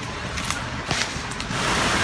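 Outdoor wind on a handheld camera's microphone: an uneven low rumble with a few light handling clicks, then a steady hiss that comes up about one and a half seconds in as the camera pans.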